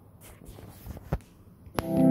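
Faint scattered knocks and shuffling, then near the end a sharp click and the Boat Stone 1500 portable Bluetooth speaker starts playing music loudly, opening on sustained electric-piano chords.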